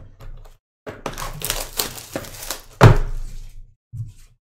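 A cardboard trading-card box being handled, its packaging rustling and crinkling, with one loud thunk a little before the three-second mark as the box is set down on the table.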